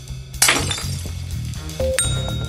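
A sudden crash sound effect about half a second in, with a bright, hissy tail that fades over about half a second, laid over background music.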